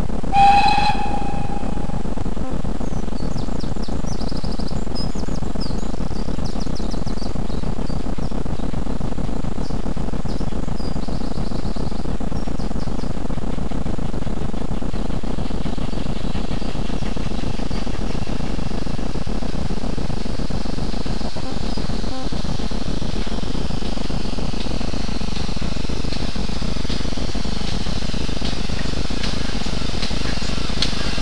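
Ex-GWR pannier tank 1369 steam locomotive gives one short whistle just after the start, then its train approaches, the clatter of wheels on rail growing steadily louder over the second half.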